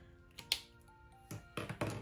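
Quiet background music with a sharp click about half a second in and a few short knocks and rustles near the end, as a highlighter is handled and set aside.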